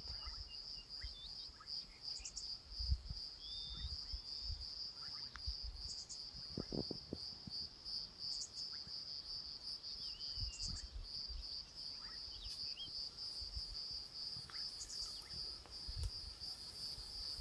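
Steady, high-pitched insect chorus of crickets trilling, with a few brief faint bird chirps and several low rumbles, the loudest about three seconds in.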